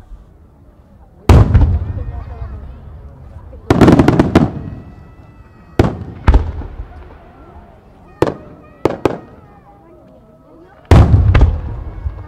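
Aerial firework shells bursting overhead: a string of sharp booms with rumbling tails, some landing singly and some in quick clusters of two or three.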